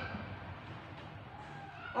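Quiet room with a steady low hum during a pause between spoken words.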